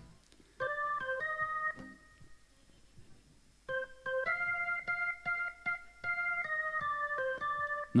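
Electric keyboard playing a short phrase of chords, pausing for about two seconds, then a longer run of repeated chords from near four seconds in: the introduction to a song.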